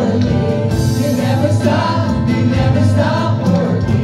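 Live worship band performing a gospel song: a man and a woman singing together into microphones over acoustic guitar, electric bass and keyboard.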